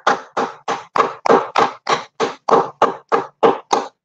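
One person clapping hands in steady applause, about four claps a second.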